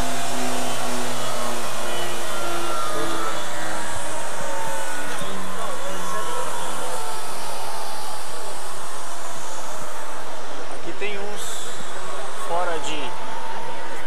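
Radio-controlled model car running on a dynamometer: a high motor whine that slowly falls in pitch, with a steady lower hum that stops about four seconds in.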